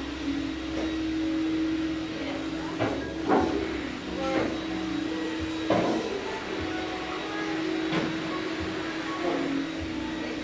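Gym room sound: a steady hum, with several sharp knocks scattered through, the loudest a few seconds in.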